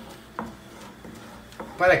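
A wooden spoon stirring a thin purée in a frying pan, quiet, with one short knock of the spoon against the pan about half a second in.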